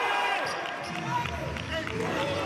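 On-court sound of a professional basketball game: the ball bouncing, short sneaker squeaks on the hardwood and players' voices.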